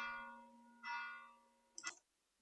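A chime: two bell-like ringing tones a little under a second apart, each fading away, followed by a short click near the end.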